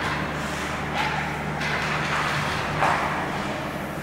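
Ice hockey practice on a rink: skate blades scraping the ice and sticks clattering, with short noisy swells about a second in and, loudest, near three seconds, over a steady low hum.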